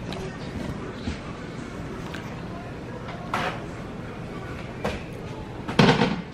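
Handling noise from a camera being moved about, with a steady low rumble and a few short knocks and rustles, the loudest near the end.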